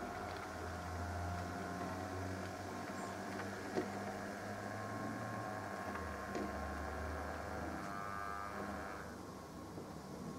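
Bachmann OO gauge model of a GWR 4575 Class Prairie tank running on layout track: a steady electric motor hum with small clicks from the wheels on the rails, easing off after about nine seconds as the locomotive slows to a stop.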